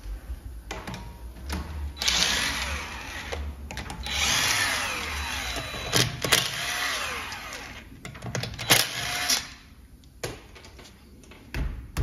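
Cordless power tool with a socket undoing the wheel bolts. It runs in several bursts of a couple of seconds each, its motor pitch rising and falling, with a few sharp metallic clicks between runs.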